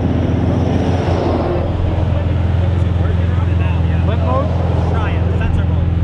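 Supercar engine idling steadily at the roadside, a continuous low, even note, with faint voices in the background.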